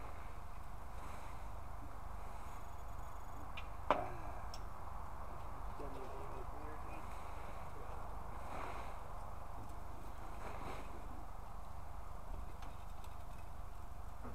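Faint swishes of a rake dragged through dry leaves over a steady low rumble, with one sharp click about four seconds in.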